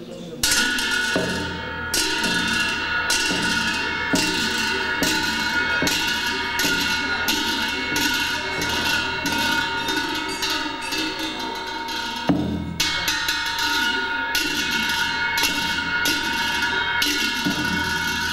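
Large Tibetan brass cymbals clashed in a steady rhythm of about two strikes a second, ringing on between strikes, with low drum beats under them. There is a brief break about twelve seconds in, and the playing stops shortly before the end.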